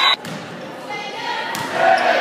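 Gymnasium crowd voices during a volleyball rally: loud shouting cuts off abruptly just after the start, leaving a murmur of voices, with a single sharp thud of the volleyball being struck about one and a half seconds in, after which voices rise again near the end.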